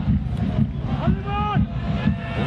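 Live football broadcast sound: a steady low rumble of stadium background noise, with a commentator's voice drawing out a single word about a second in.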